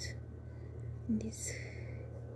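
A pause in soft, whispery speech: one short spoken sound about a second in, followed by a breathy hiss, over a steady low hum.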